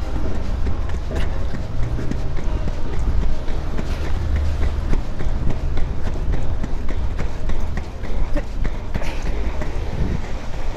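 Inline hockey skates with 85a urethane wheels striding fast over rough city asphalt: a constant low rolling rumble with frequent small clicks and knocks from the strides and the cracks in the pavement.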